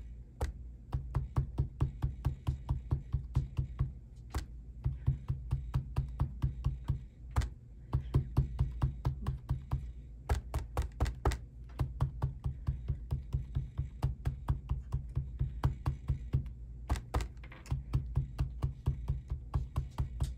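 Handheld ink dauber tapping rapidly on a plastic stencil laid over shrink plastic, about five taps a second, in runs broken by short pauses.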